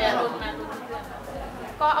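Speech: a woman's voice ends a phrase, pauses for about a second with faint background chatter, then starts again near the end.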